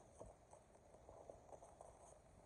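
Faint, scattered light clicks and taps of plastic-bagged parts being handled and shifted in a cardboard box.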